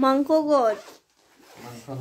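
A voice calls out briefly with a falling pitch. Then a bag's zipper is pulled open.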